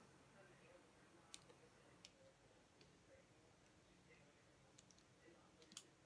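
Near silence: room tone with a few faint, sharp clicks, the loudest near the end.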